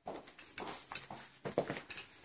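Irregular steps clicking and knocking on a hardwood floor.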